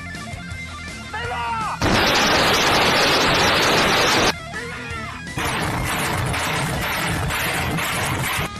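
RM-70 multiple rocket launcher firing a salvo of 122 mm rockets: a loud continuous rushing roar for about two and a half seconds that cuts off suddenly. After a short lull, a second long run of rapid launches follows.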